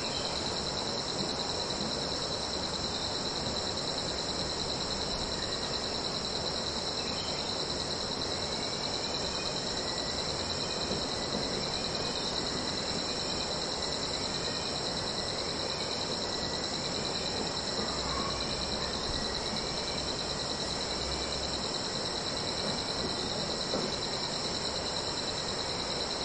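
A steady chorus of insects trilling without a break. From about a third of the way in, a faint run of short repeated chirps comes about once a second for ten seconds or so.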